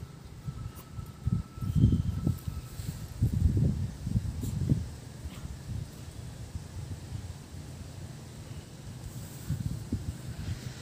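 Wind buffeting the phone's microphone outdoors: an irregular low rumble with stronger gusts in the first half, settling to a steadier rumble later.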